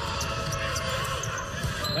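Live basketball game sounds in a large arena: steady crowd noise with a ball bouncing on the hardwood court.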